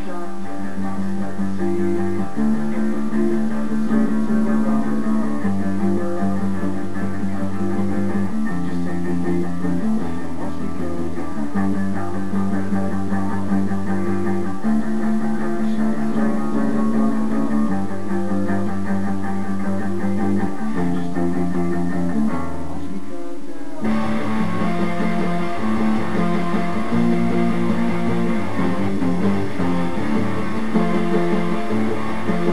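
Electric guitar playing sustained chords over a bass line, the chords changing every second or two. About 24 seconds in, after a brief break, the sound gets fuller and brighter.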